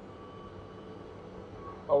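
Steady road and drive noise inside the cabin of a Citroën Ami cruising on a dual carriageway, with a faint high whine that comes back near the end.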